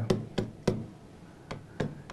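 A pen tapping and clicking against the glass of a touchscreen whiteboard while drawing: about five short, sharp taps, spaced unevenly.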